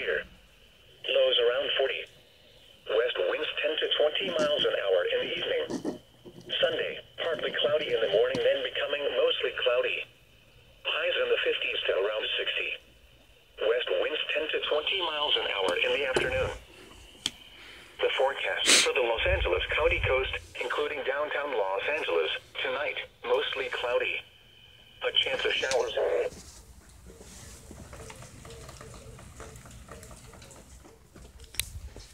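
Weather radio broadcast: a voice reading a weather forecast through a small radio's speaker, thin and narrow-sounding, in phrases with short pauses. It stops about four seconds before the end, leaving a low hiss.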